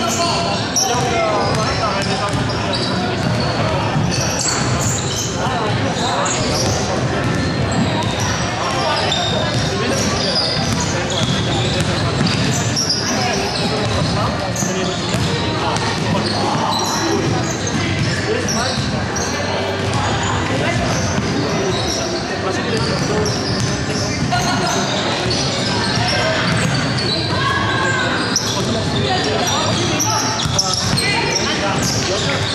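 A basketball being dribbled and bounced on a wooden gym floor, with indistinct voices of players and onlookers echoing in a large sports hall.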